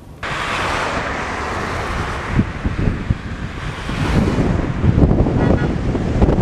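Road traffic passing along a street, with wind buffeting the microphone in gusts that grow stronger about halfway through.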